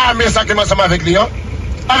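A man's voice speaking for about the first second, pausing briefly, then starting again near the end, over a steady low rumble.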